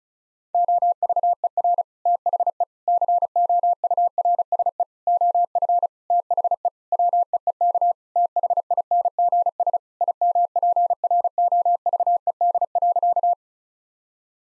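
Computer-generated Morse code tone, one steady beep keyed rapidly in dots and dashes at 35 words per minute, starting about half a second in and stopping shortly before the end. It spells out the sentence 'Over the course of the week things improved'.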